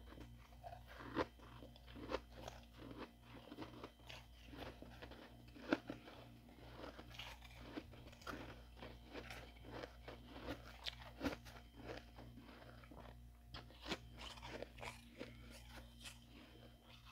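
A spoon scraping and digging into soft, powdery freezer frost, giving an irregular run of crisp crunches, the loudest about six seconds in.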